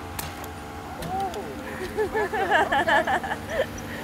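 Steady hum of the bowfishing boat's motor, with two sharp clicks just after the start and indistinct voices talking over it from about a second in.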